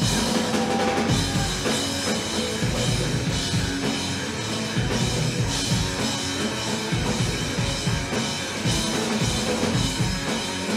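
Live rock band playing an instrumental passage: drum kit, two electric guitars and bass guitar, without vocals.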